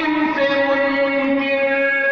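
A man singing a long held note through a public-address system with echo, the pitch stepping down slightly about half a second in.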